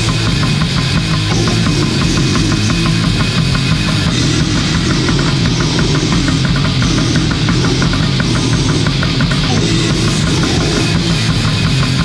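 Bestial black metal: fast, dense drumming under distorted electric guitar and bass, loud and unbroken.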